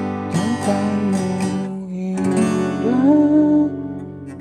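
Acoustic guitar strummed in a steady rhythm through the song's verse chords, starting on G. A man's voice sings the melody over it, rising to a held note near the end.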